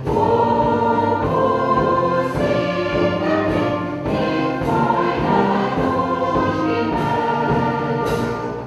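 Large mixed choir of men's and women's voices singing long, held phrases, one phrase starting at the very beginning and a short breath about halfway through.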